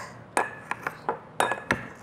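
A pestle knocking and grinding against the inside of a glass as lime pieces and mint leaves are crushed: five sharp clinks spread over two seconds, some ringing briefly.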